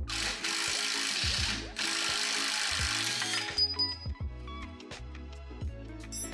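Cordless power tool running in two bursts of about a second and a half each, with a short break between, while working on rusty rear suspension parts, over background music. A few light clicks follow.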